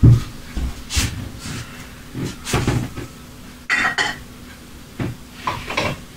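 Knocks and clatter from handling a glass baking dish and kitchen things on a table, roughly one every second, with a brighter double clink near the middle.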